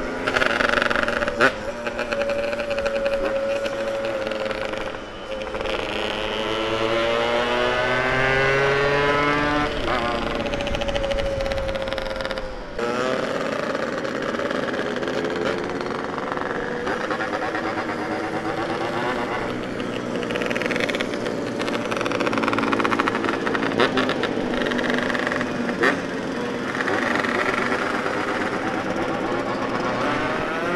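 Yamaha RX-King two-stroke motorcycle engine running on the move, its pitch climbing steadily for several seconds as it accelerates, then levelling off. The sound changes abruptly about thirteen seconds in.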